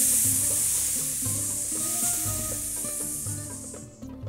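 A long, drawn-out snake-like "sss" hiss that fades away near the end, over light background music.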